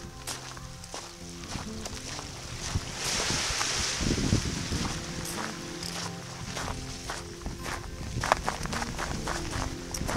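Background music, with footsteps of a hiker in ice cleats crunching on sand and gravel. A brief rush of noise comes about three seconds in, with a low rumble that fits wind on the microphone.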